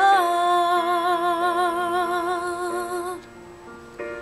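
A woman singing one long held note with vibrato over soft backing music; the note ends about three seconds in, leaving the quieter backing.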